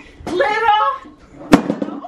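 A woman's voice speaking for about a second, then a single sharp smack about one and a half seconds in, the loudest sound here.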